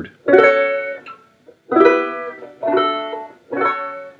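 A capoed four-string banjo with no fifth string, strung upside-down and played left-handed: four chords picked one after another, each left to ring and fade. They demonstrate the three-chord shape and its variations.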